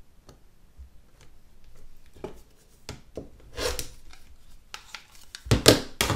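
Craft handling sounds on a cutting mat: a few light clicks, then scraping and rubbing as a rotary cutter and an acrylic quilting ruler are worked along the trimmed pouch and lifted away. The last rub, near the end, is the loudest.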